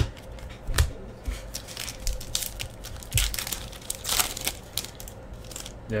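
Foil wrapper of a 2015-16 Fleer Showcase hockey card pack crinkling and tearing as it is opened, in a run of short crackles that is busiest in the middle.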